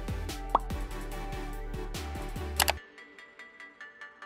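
Background music with a steady bass beat. About half a second in comes a short rising pop sound effect, and a sharp double click comes just before the music drops away near the end, leaving only faint ticks.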